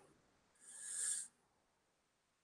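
A person's short, faint breath near the microphone, swelling for well under a second with a slight whistle and then stopping sharply.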